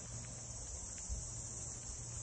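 Quiet outdoor background of a steady, high insect chorus, with a faint steady low hum underneath.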